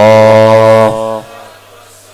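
A man's voice chanting a religious recitation, holding the last syllable on one steady note for about a second before breaking off; a faint low hum remains under it.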